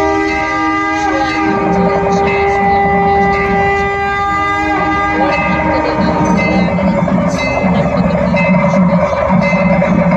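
Long, steady horn-like notes blown together, like conch shells at a Hindu aarti, over ringing bells and a pulsing beat about twice a second that starts shortly after the opening.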